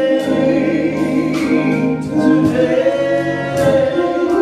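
A church choir singing a gospel song, with long held notes that move from pitch to pitch.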